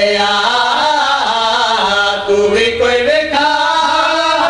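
A man's voice chanting a devotional verse (qasida) in long held notes that slide from pitch to pitch, with no pause.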